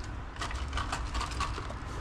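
Rustling and crinkling of a foil-lined insulated delivery bag being handled and set down, a quick run of light clicks and crackles in the first half, over a low handling rumble.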